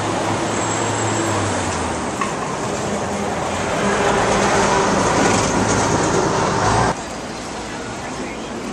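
Loud, steady city traffic noise with a low engine hum. About seven seconds in it drops abruptly to a quieter background.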